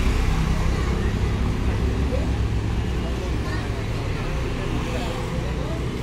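Low, steady rumble of a car's engine running close by, easing off slightly, with faint voices in the background.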